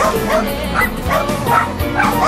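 A dog yipping and barking in short, high, rising yelps, several in quick succession, over background music.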